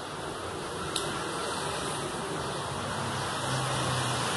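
Steady, even background hiss with a single sharp click about a second in.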